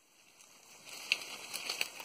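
Footsteps on dry forest leaf litter and twigs: a run of short crackles starting under a second in.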